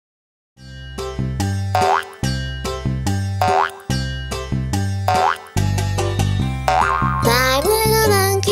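After half a second of silence, the bouncy instrumental intro of a children's song starts, with a strong bass beat and three rising cartoon 'boing' sounds. Near the end a wavering, voice-like melody joins in.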